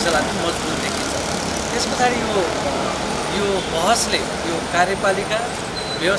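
Steady road traffic noise from passing cars, a van and motorcycles on a street below, with a man's voice speaking over it.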